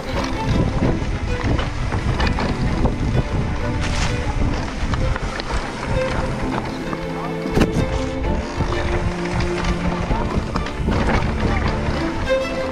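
Wind rushing over the microphone and the rattle and rumble of a mountain bike rolling fast over a dirt trail, with music playing underneath.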